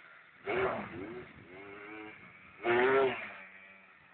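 Yamaha Blaster quad's single-cylinder two-stroke engine revving as it ploughs through mud, with two loud rises in revs, one shortly after the start and one about two-thirds of the way through.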